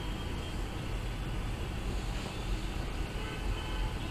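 Steady low rumble with a faint hiss.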